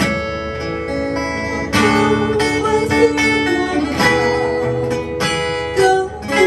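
Acoustic guitar strumming chords, with fresh strums about two seconds in, again near four seconds and just before the end, under a held, slightly wavering melody line.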